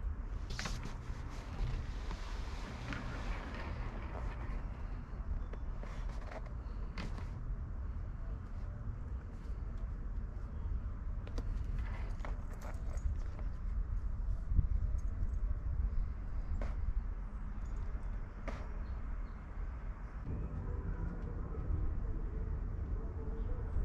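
Scattered light clicks and taps of a small dog's claws on a composite deck, over a steady low wind rumble on the microphone.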